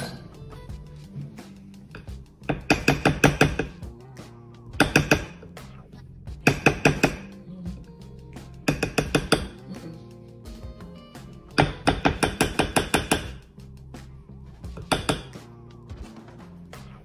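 Metal hand-mixer beater knocked rapidly against a glass mixing bowl to shake off cookie dough: about six bursts of quick clinks, with music playing underneath.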